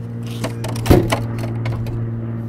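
A few short knocks and clatters as the end of a long metal antenna mast is set onto a plastic crate, the loudest just under a second in. A steady low hum runs underneath.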